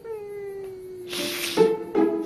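A person sobbing through a hand held over the mouth: a long wailing cry that slides down in pitch, then a loud gasping breath and another wail starting near the end.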